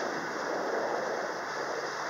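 Steady rushing noise of wind and water around a sailboat under way on choppy water.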